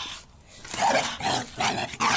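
Four-month-old red-nose pit bull puppy giving short barks and growls in quick succession, about three a second, starting about a second in.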